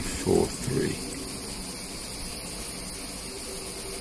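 A couple of short spoken syllables in the first second, then only a steady background hiss with a faint low hum.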